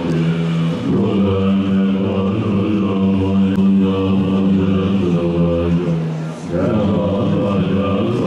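Tibetan Buddhist monks chanting in low, sustained voices, the notes held long with short breaks between phrases.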